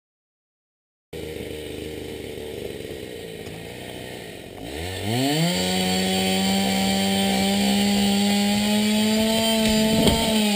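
Husqvarna 365 chainsaw engine driving a Lewis chainsaw winch. It comes in idling about a second in, revs up to full throttle about halfway through, and holds a steady high note while the winch pulls a boulder over.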